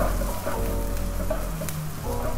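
Diced onions sizzling in hot oil in a nonstick wok while a spatula stirs them, with a few light scrapes and taps of the spatula against the pan.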